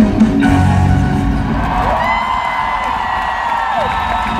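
Live pop band playing in an arena, its beat stopping about half a second in, giving way to the crowd cheering with gliding whoops from about two seconds in, as the song ends.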